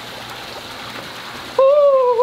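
Steady trickling and splashing of water in a backyard fish pool. About a second and a half in, a man's loud, drawn-out vocal exclamation starts and carries on.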